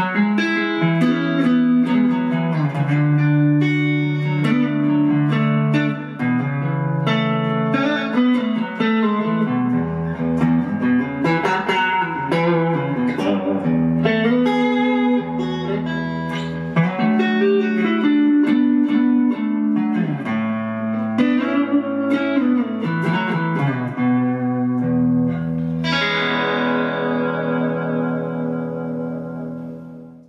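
Grez Folsom solidbody electric guitar on its Lollar Firebird-style neck pickup, clean tone through a mid-sixties Fender Blackface Princeton amp, played as a flowing chord-and-melody passage. Near the end a last chord is left to ring and fade.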